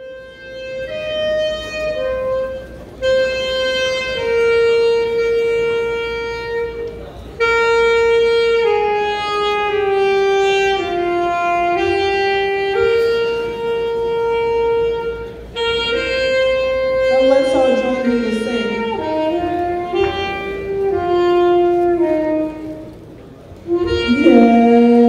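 Saxophone playing a slow melody, one note at a time, with long held notes that step up and down in pitch.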